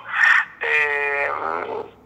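A man's voice: a short breath, then a long, level hesitation sound, a held "eeh" of about a second that trails off.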